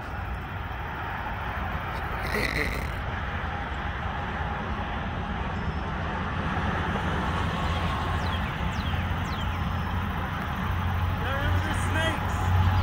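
Steady rumble of road traffic, with a low hum that swells a little toward the end.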